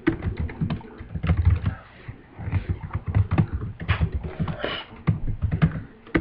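Typing on a computer keyboard: rapid, irregular runs of key clicks with short pauses between them.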